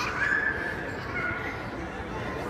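A young child's high-pitched squeals, one held cry near the start and a shorter one a little past the middle, over the background noise of children playing in a large room.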